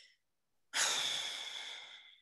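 A person's long, breathy sigh, starting under a second in and fading away.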